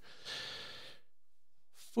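A man's breath between phrases of speech: a short, soft rush of air in the first second.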